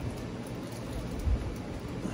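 Rustling and soft knocks of vinyl record sleeves being handled and flipped through on a shelf, with a dull thump just over a second in.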